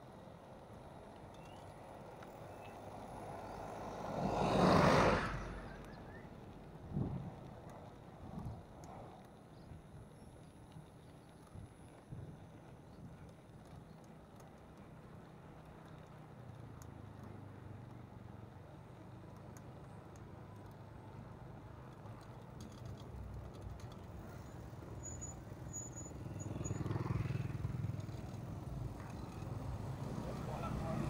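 Bicycle riding over rough, patched asphalt, heard from a handlebar-mounted camera: steady tyre and wind rumble with a few short knocks from bumps. There is a loud whoosh about four seconds in, and the noise builds near the end as motor traffic comes close.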